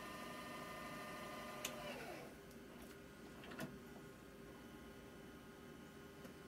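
GoVideo VR4940 VCR deck fast-forwarding a VHS tape, a faint steady whir of the reel motor. Just before two seconds in, a small click and the whir slides down in pitch and fades as the transport spins down, with another faint mechanical click a couple of seconds later.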